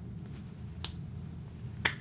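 A coin tossed off the thumb with a sharp click, then about a second later another click as it is caught and slapped onto the back of the hand.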